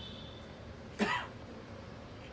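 A single short cough about a second in, over quiet room tone.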